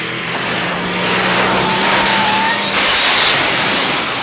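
Time-travel transition sound effect: a loud rushing whoosh that builds steadily in loudness, with a low steady hum under it.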